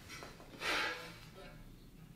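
Quiet handling noise as a bicycle frame is lifted from below a workbench: faint shuffling and rustling, with one soft rustle a little over half a second in.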